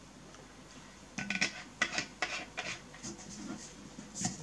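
Handling noise of things on a table: after a quiet first second, a string of light clicks, taps and rubs, about a dozen short strokes.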